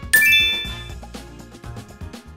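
A bright chime sound effect dings just after the start and rings out over about a second, as the subscribe button is clicked, over background music with a steady beat that fades down.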